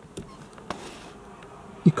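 Faint steady road and engine noise inside a moving car's cabin, with a couple of light clicks, before a man's voice begins near the end.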